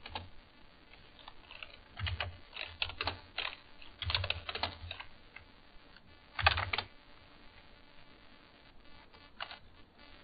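Typing on a computer keyboard in several short bursts of key clicks with pauses between, the loudest burst about six and a half seconds in.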